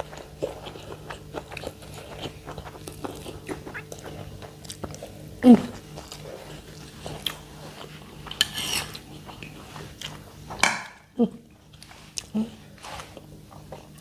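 Two people eating by hand from plates, with chewing and small clicks and scrapes of fingers and food against the plates. Short murmured 'hmm's of approval come a few times.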